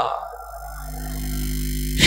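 A low, steady electrical hum from the amplified sound system fills a pause in the speech, growing gradually louder. The last word of a man's amplified voice trails off at the very start.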